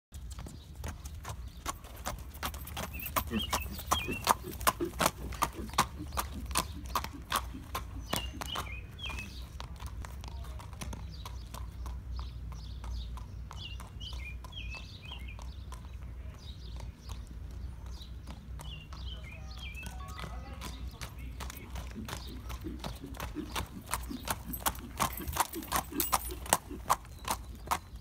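Horse's hooves clip-clopping on asphalt as it is led at a walk in hand, with steady hoofbeats. They are loud near the start and near the end, and fainter in the middle as the horse moves away and comes back.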